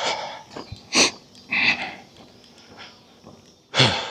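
A man's breathy, nasal sounds: a couple of sharp exhalations or sniffs, then a short voiced sound falling in pitch near the end.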